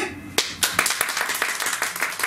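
Audience clapping at the end of a song. It starts with a single clap about half a second in and quickly becomes steady applause of many distinct hand claps.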